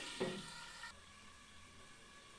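Meat sizzling as it fries in oil in a covered clay tagine, the sizzle growing quieter and duller about a second in.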